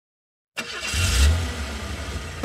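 Bus engine sound effect starting suddenly about half a second in. It swells to a loud rev about a second in, then settles into a steady low running rumble.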